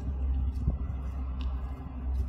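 Steady low rumble of road traffic from a nearby main road, with a few faint clicks over it.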